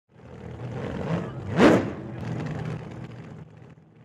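A car engine drone that swells in, revs up once sharply about a second and a half in, then fades away.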